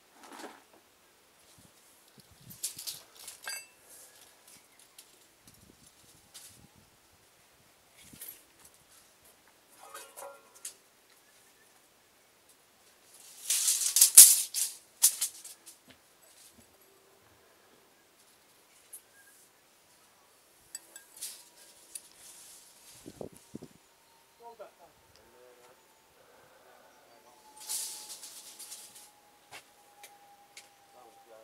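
Gritty scraping of a bricklayer's steel hand tool against clay brick and mortar, in several separate bouts, the loudest about halfway through, with a few light knocks between. A faint steady hum slowly falls in pitch through the second half.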